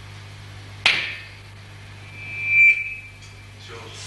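Steady low electrical hum from the band's amplified gear. A sharp knock comes about a second in. Then a single high tone swells up over most of a second and cuts off: the loudest sound here.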